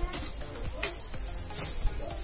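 A steady high-pitched insect chirring, with a few sharp strikes of a hoe blade chopping and scraping into weedy soil.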